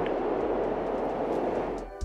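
Wind ambience sound effect: a steady rushing noise that dips near the end and cuts off suddenly.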